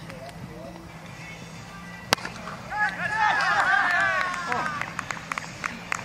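A single sharp knock about two seconds in, then several cricketers shouting together for about two seconds, an appeal as the first wicket falls.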